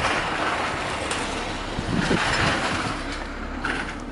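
Wind rushing over a phone microphone outdoors, a steady noise that eases off slightly toward the end.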